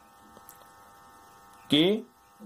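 Faint, steady electrical hum made of several thin steady tones, with a man's voice starting near the end.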